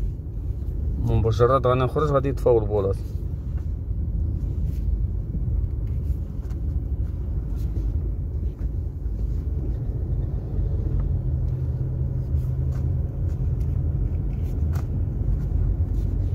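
Steady low rumble of a Hyundai Santa Fe on the move at about 33 km/h, heard from inside the cabin. A man's voice speaks briefly about a second in.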